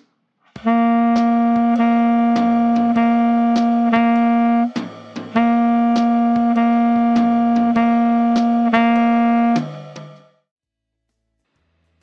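Tenor saxophone playing a short jazz syncopation exercise twice through on one repeated note. The later half note is pushed half a beat early (anticipation), so it takes a natural accent. A steady click keeps time underneath.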